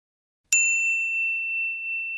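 A single bright, high-pitched ding about half a second in, its bell-like tone ringing on steadily after the strike: a logo chime.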